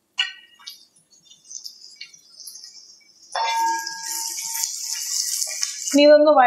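Shallots, curry leaves and mustard seeds frying in coconut oil in an aluminium pan. A couple of light metallic clinks come early, then about three seconds in a steady high sizzle starts, with ringing metal tones as the pan is stirred with a wooden spatula.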